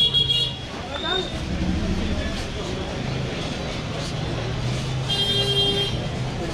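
Crowded street ambience with a steady low hum and background voices, and a vehicle horn sounding twice: a short blast at the start and a longer one of about a second near the end.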